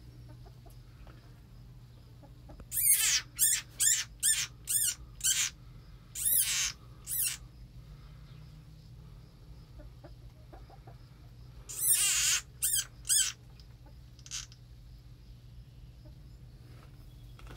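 A frog's distress screams: a run of about eight loud, high-pitched cries, each falling in pitch, starting about three seconds in, then three more near twelve seconds and a fainter one after. It is the cry of a frog seized by a garter snake.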